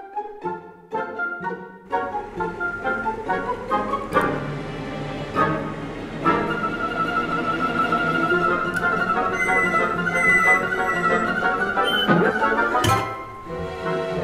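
Orchestral film score led by bowed strings: short separate notes at first, then held notes, with a falling glide about twelve seconds in. A sharp hit lands near the end.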